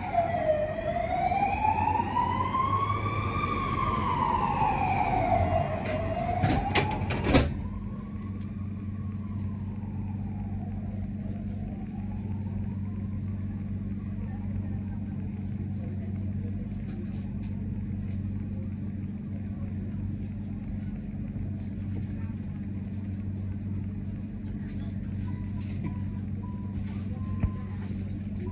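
A siren wailing slowly up and down, loud at first, then suddenly much fainter about seven seconds in and fading away. A steady low hum of the tram runs underneath.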